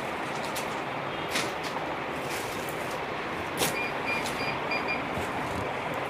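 Steady background noise, with two brief rustles of heavy embroidered fabric being handled, and a faint high beep repeating about five times near the middle.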